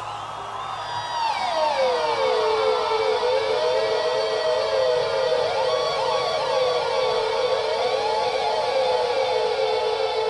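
Electric guitar squeals and pinch harmonics: high gliding tones slide down and settle on one steady held note, while further tones swoop up and down over it, siren-like.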